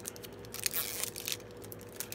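Mascara packaging crinkling and crackling as it is handled, busiest from about half a second to a second and a half in.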